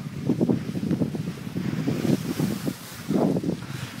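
Wind buffeting the microphone in irregular gusts, a low rumble that surges and drops.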